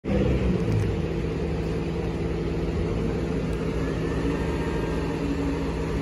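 Front-loader garbage truck with a Heil Half/Pack Freedom body, its diesel engine running steadily while stopped at a recycling dumpster.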